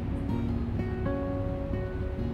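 Solo acoustic guitar playing with no voice, its chords ringing and changing every second or so.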